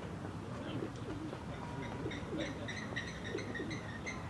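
Birds calling: a run of short, high chirps repeated several times a second, starting about halfway through.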